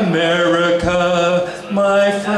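A man singing unaccompanied into a microphone, holding a long low note that breaks off about a second and a half in, then starting a new, slightly higher held note near the end.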